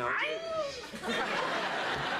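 A man's drawn-out, sliding "no", then a studio audience laughing from about a second in.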